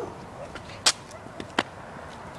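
Sharp clicks or snaps: one loud one just under a second in, then two fainter ones about half a second later.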